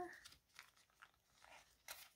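Near silence, with faint rustles and small clicks from a frosted plastic binder envelope being handled, and one sharper tick near the end.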